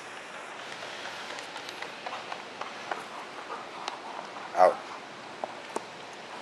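Airedale terrier's paws and claws ticking and padding on a rubber-matted floor as she trots, a scatter of light irregular clicks.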